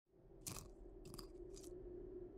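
A knife blade crunching down on a small tablet: three short, crisp cracks about half a second apart, faint, over a low steady hum.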